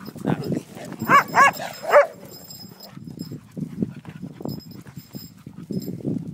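A dog giving three short, high yelps in quick succession about a second in.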